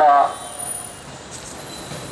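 A man's speech through a microphone: one word at the start, then a pause of about a second and a half with only faint steady background noise.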